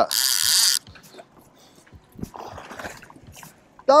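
Fishing reel drag buzzing as a hooked fish pulls line off the reel, cutting out under a second in; after that only faint boat-deck noise.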